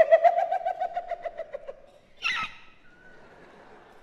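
A person's high, rapidly trilled call, lasting about two seconds and fading out, followed by a short sharp vocal outburst.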